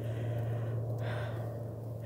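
Steady low drone of a distant aircraft engine, with a soft breath about a second in.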